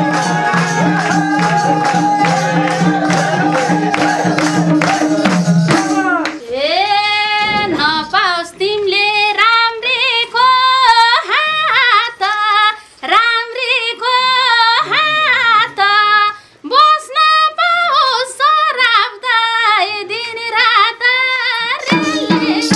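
Nepali dohori folk music. A band plays for about six seconds with tambourine strokes and steady held tones, then stops. A woman then sings a verse alone in a high voice, with short pauses between lines, and the band comes back in at the very end.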